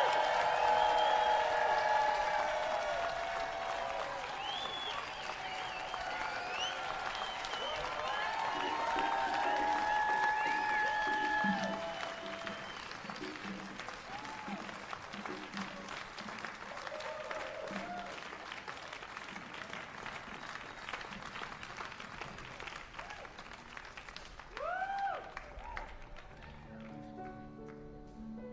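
Concert audience applauding and cheering, with whoops and shouts over the clapping. The applause is loudest at first and thins out after about twelve seconds into quieter, scattered clapping.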